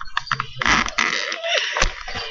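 Rustling and scraping as a deck of playing cards is handled and slid across a desk near the microphone, with a sharp knock near the end.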